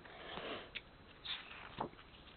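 Faint handling noise from a sticker book's paper pages being leafed through: soft rustles and a few light clicks.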